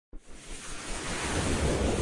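A rushing whoosh sound effect with a low rumble, starting abruptly out of silence and swelling steadily louder.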